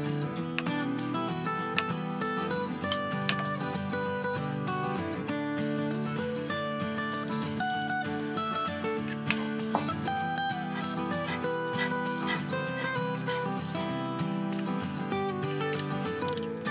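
Light background music: a steady melody of held notes that change every second or so.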